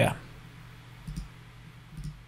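Faint computer-mouse clicks, one about a second in and another near the end, over quiet room tone.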